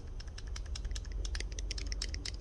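Deployed blade of a Microtech Ultratech out-the-front knife rattling in its handle as it is worked in a circle: a rapid, irregular run of small clicks. The rattle is the sign of blade play, the blade not locked up tight.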